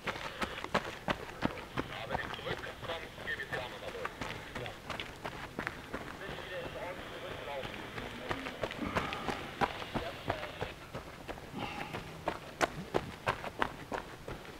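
Running footsteps crunching on a gravel track as race runners pass close by, a quick series of sharp footfalls that is loudest near the start and again near the end, with indistinct voices in between.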